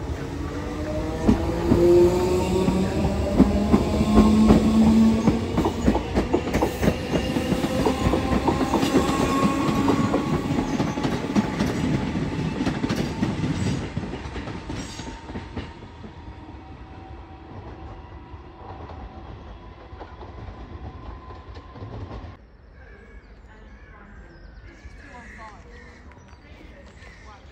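British Rail Class 313 electric multiple unit pulling away, its traction motors whining up in pitch as it accelerates, over a dense clatter of wheels on rail joints. The sound is loudest in the first half and drops away sharply about fourteen seconds in, with a further drop near the end.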